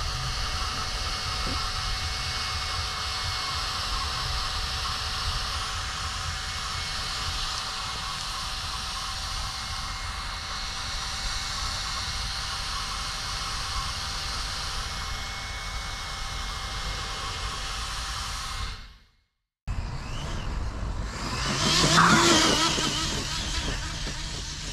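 Steady background hiss with faint steady hums, broken by a short cut; then a loud rush of sound that swells and fades over about two seconds as the Arrma Talion XL 6S RC car passes at speed.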